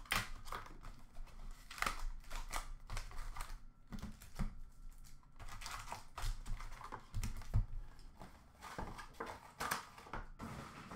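A cardboard hockey card box being opened and emptied by hand: foil-wrapped card packs slid out and set down in stacks on the counter, an irregular run of light taps, clicks and rustles.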